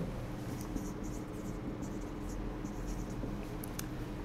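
Whiteboard marker writing on a whiteboard: a string of faint, short scratchy strokes.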